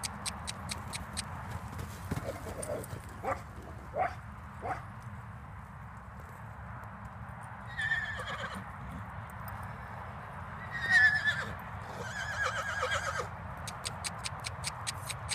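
A young buckskin filly neighing three times: a short whinny about 8 s in, the loudest one around 11 s, and a pulsing, shaking whinny near the end. Hoofbeats come earlier, a quick run of ticks near the start and a few single strikes a few seconds later.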